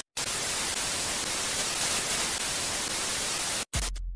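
Loud hiss of TV-style static, a glitch-transition sound effect, that cuts off suddenly about three and a half seconds in; a short deep thud follows just before the end.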